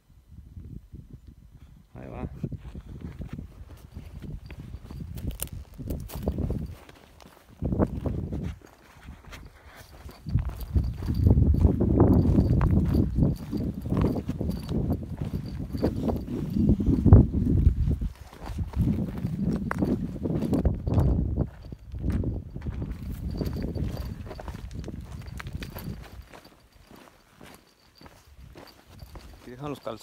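Footsteps on loose rocky ground while walking downhill, with heavy low rumbling handling noise from the microphone rubbing and knocking against clothing. The rumble comes in uneven swells, loudest through the middle.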